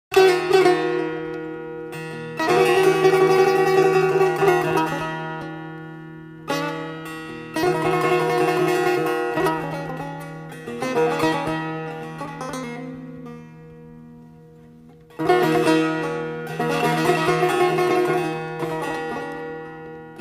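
Persian setar played in traditional style: phrases of sharply plucked notes that ring and fade, over a low note held steadily beneath.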